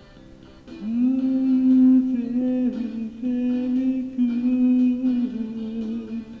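A man's voice holding a long wordless, hummed note through a karaoke microphone with heavy echo, with a few small bends in pitch, coming in about a second in over a guitar backing track.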